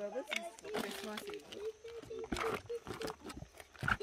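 A knife cutting into the soft top of a felled oil palm trunk: a few short slicing, scraping strokes, one longer scrape about halfway through. The cuts shave the tapping hole clear so the sap can flow again. A voice-like droning tone runs underneath.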